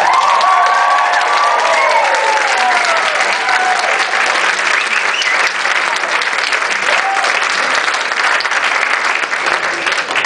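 Concert audience applauding at the end of a song, clapping steadily throughout, with cheers and whistles rising and falling over the clapping in the first few seconds.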